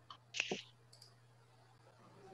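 Two quick sharp computer mouse clicks about half a second in, then a fainter click about a second in, over a low steady hum.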